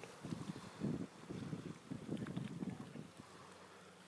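Faint, uneven low rumble of wind buffeting the phone's microphone, dying away near the end.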